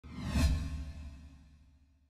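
A whoosh sound effect over a deep bass rumble, used as a logo sting: it swells to a peak about half a second in, then fades away over the next second.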